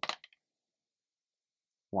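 The tail of a spoken word, then dead silence for the rest. The dice tumbling in the felt-lined tray make no audible clatter.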